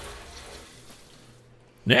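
Kitchen tap water running over a potato into a stainless steel sink, fading out about one and a half seconds in.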